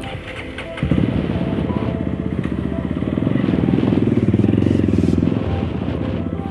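Close motorcycle engine pulling away: it picks up suddenly about a second in, rises in revs and eases off again about five seconds in. Background music plays underneath.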